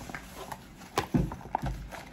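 A few light knocks and clicks, with a low thud or two, as plastic paint markers are handled and shift against each other inside a fabric zippered case. They begin about halfway through.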